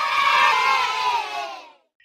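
Crowd of children cheering and shouting, swelling and then fading away after about two seconds: a reward sound effect for a correct quiz answer.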